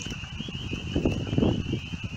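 A chorus of spring peepers keeps up a steady high-pitched trilling in the background. Over it, a louder low rustling noise, strongest about a second in.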